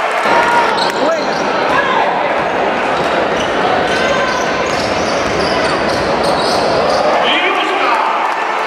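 Live basketball game sound in a large hall: the ball bouncing on the court amid a continuous murmur of crowd and player voices.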